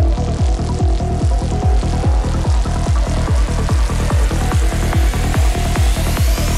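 Psytrance with a steady kick drum and rolling bass under synthesizer lines, and a rising sweep that begins near the end.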